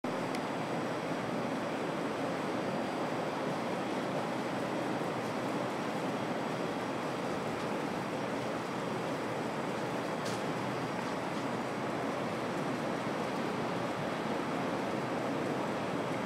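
Steady, even background hiss with no distinct events: the gym's room tone.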